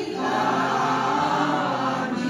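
Choir singing in parts, holding long sustained notes; a short break at the very start before a new phrase begins.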